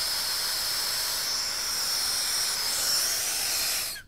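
Harris INFERNO gas torch on a small number-three tip, its flame hissing steadily and high-pitched while heating a copper joint for soft solder; the hiss stops abruptly at the very end.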